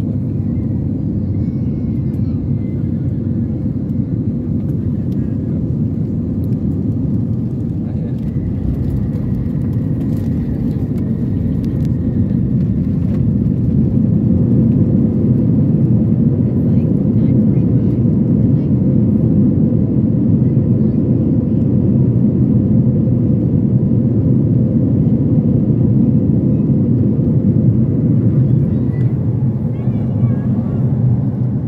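Jet airliner heard from inside the cabin during landing: a steady low rumble of engines and airflow that grows louder about halfway through, as reverse thrust and braking slow the plane on the runway.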